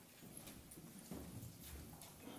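Near silence: room tone with a few faint footsteps on the floor.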